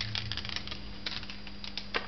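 Polaroid peel-apart instant print being separated from its negative: a run of short crackles and papery clicks, the sharpest just before the end.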